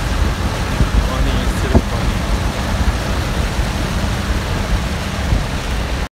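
Steady low rumble of a moving vehicle heard from inside it, engine and tyres on a wet road, with a couple of short knocks about one and two seconds in.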